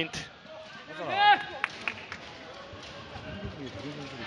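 Sports-hall background with a short raised voice about a second in, followed by a couple of sharp knocks and low voices around a team huddle.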